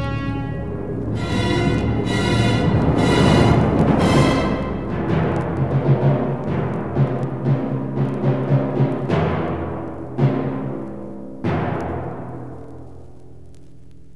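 Symphony orchestra playing loud full chords, then a run of sharp timpani and bass drum strokes about half a second apart. The strokes portray the hunters' gunshots, and the music dies away near the end.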